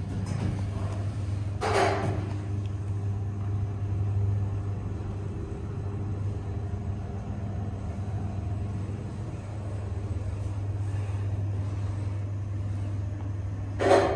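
Thyssenkrupp traction elevator car travelling up, heard from inside the cab as a steady low hum. There is a brief clunk about two seconds in.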